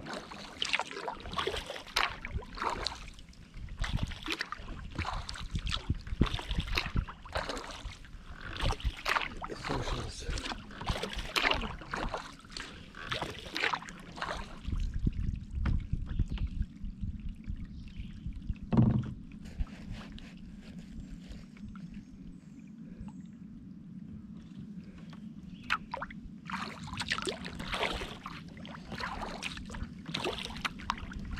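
Kayak paddle strokes, the blades dipping and splashing with water dripping off them, in a steady run. The strokes stop for about ten seconds halfway through, leaving a low steady hum with one sharp knock, then start again near the end.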